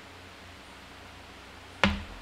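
Faint steady room hiss, then near the end a single sharp knock: a drinking glass set down on a table.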